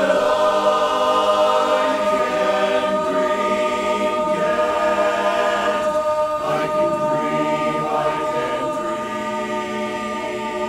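Men's barbershop chorus singing a cappella in close four-part harmony, holding long chords that shift a few times.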